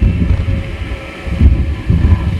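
Wind rumbling on the microphone in gusts, a low buffeting noise with no tone to it.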